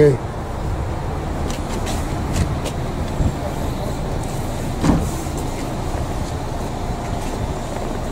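Steady rumble of road traffic, with one brief louder sound about five seconds in.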